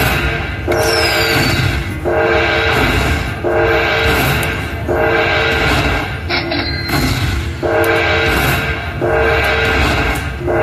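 Video slot machine's bonus-win tally sound: a loud sustained chord phrase repeating about every second and a half while the win meter counts up each coin's value, with a brief falling whistle about a second in.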